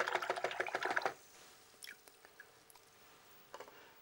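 Paintbrush being rinsed in a water pot, a fast rattle of clicks for about a second, then a few faint taps.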